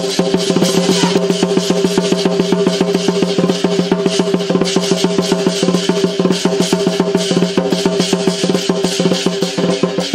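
Lion dance percussion: a drum beaten in fast, continuous strokes with cymbals ringing over it.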